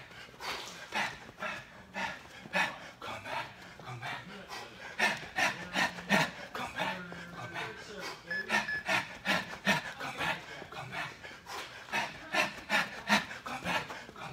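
Jump rope slapping the gym floor and feet landing in a steady rhythm, about two to three strikes a second, with hard breathing between them.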